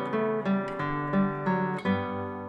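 Music: acoustic guitar playing picked notes over ringing chords, a new note struck every third to half a second.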